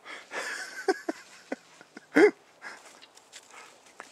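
A puppy scuffling on gravelly dirt, with a few clicks, then one short, loud yip about two seconds in.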